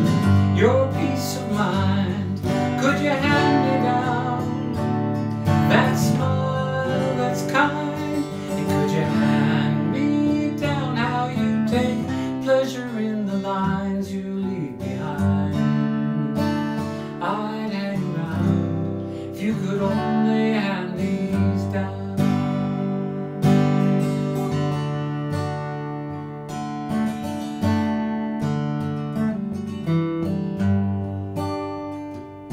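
Steel-string acoustic guitar strummed and picked, playing the chords of a folk song.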